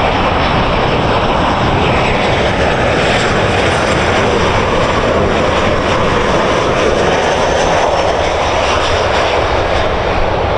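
Jet airliner engines running as the plane passes close by: a loud, steady rush with a faint, slowly shifting pitch.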